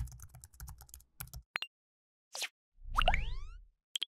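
Animation sound effects: a quick run of keyboard-typing clicks for about a second and a half, then a short swish. A low boom with several tones gliding upward comes next and is the loudest part, and a short pop follows at the end.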